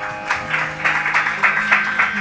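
Audience applause starting a moment in, over a steady drone that holds on after the piece ends.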